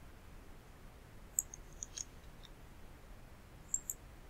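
Faint computer mouse clicks: one about a third of the way in, two or three more around the middle, and a quick double click near the end, over a low steady hiss.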